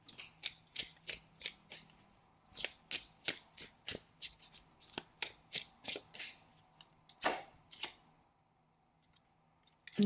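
A deck of Romance Angel oracle cards being shuffled by hand: a quick run of soft card snaps, about three a second, with two louder ones near the end, stopping about eight seconds in.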